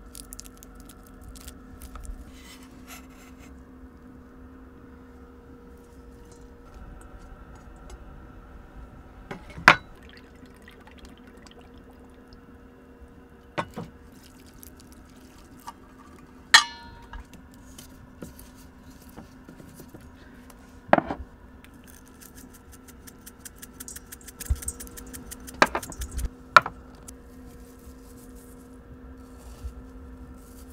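Metal measuring cups and spoons clinking against a metal mixing bowl, half a dozen sharp clinks spread through, one ringing on briefly. A steady low hum runs underneath.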